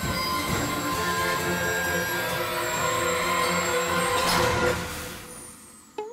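Cartoon locomotive sound effect: wheels skidding on the rails with a long metallic brake squeal as the engine makes an emergency stop, mixed with music. The squeal holds for about four and a half seconds, then fades out over the last second or so as the engine comes to a halt.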